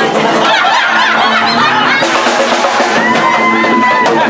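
Live band music with drums, loud and steady, ending on a long held note.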